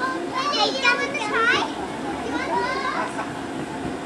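Young children's high voices shouting and chattering as they play, loudest in a burst of squeals from about half a second to a second and a half in, with more calls after.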